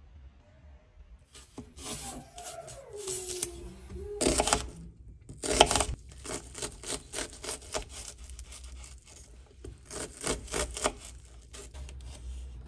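Kitchen knife dicing vegetables on a wooden cutting board: a run of sharp chopping strikes, about three a second, with a couple of louder cuts in the middle.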